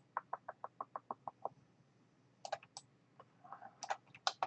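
Computer mouse being worked: a quick, even run of about a dozen soft ticks in the first second and a half, then a few sharper clicks around two and a half seconds in and again near the end.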